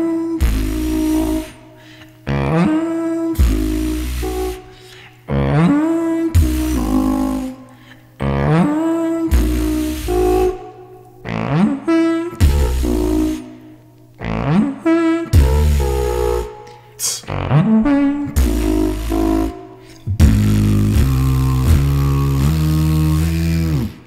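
Beatboxer's vocal percussion routine: deep kick-like bass hits and rising pitched vocal sweeps repeating in phrases about two seconds long, giving way near the end to a held bass line that steps in pitch.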